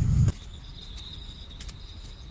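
A loud low rumble cuts off abruptly about a third of a second in. What follows is a steady high-pitched insect trill, like a cricket's, with a few faint clicks.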